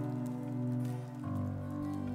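Worship band playing an instrumental passage on acoustic guitars and keyboard, with held chords that change to a new chord just over a second in.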